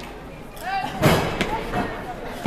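Children's voices shouting and calling, with a sudden thump about a second in.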